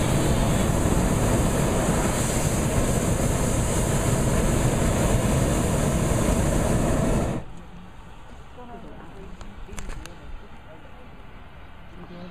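Hot-air balloon's propane burner firing, a loud steady rushing blast that stops suddenly about seven seconds in.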